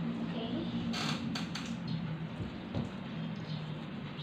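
A small rolled paper slip being unrolled and handled, with a few short rustles about a second in, over a steady low drone.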